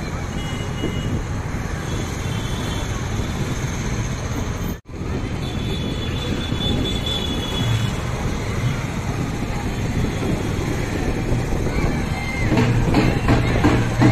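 Busy street noise heard from a moving scooter: motorbike and traffic engines, rushing air and crowd chatter. Near the end, louder music with drums comes in.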